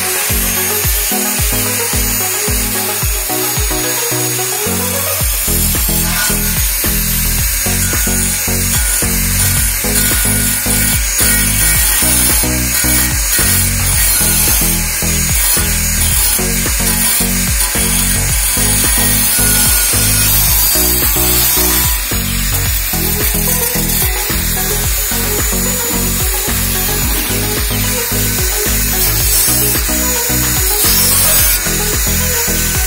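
Electric angle grinder cutting into the steel top of a beer keg: a steady high whine with a grinding hiss. Background music with a beat plays under it.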